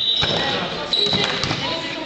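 A basketball bouncing on a sports-hall floor, with a few sharp hits on the boards that ring in the hall. About a second in comes a short, steady high-pitched squeal lasting about half a second.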